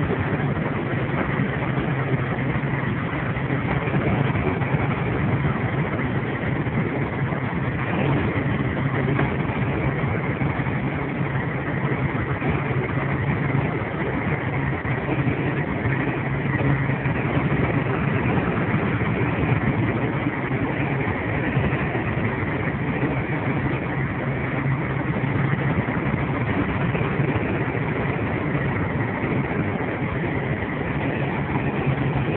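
Steady engine drone and road noise heard from inside the cab of a truck cruising at highway speed on a wet road, with an even low hum that stays constant throughout.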